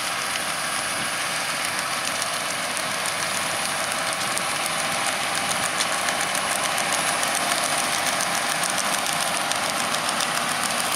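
John Deere 6930 tractor's six-cylinder engine running steadily as it drives the PTO of a Richard Western muck spreader, with the spreader's rear beaters throwing muck. The sound grows a little louder in the second half.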